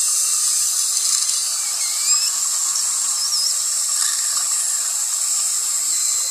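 Dental saliva ejector sucking steadily, a high hiss with a few faint warbling gurgles around the middle as it draws saliva from the mouth.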